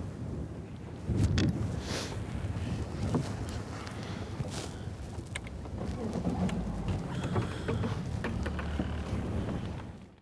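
Wind buffeting the microphone in an open fishing boat, a steady low rumble with a few sharp knocks and rustles of gear and clothing.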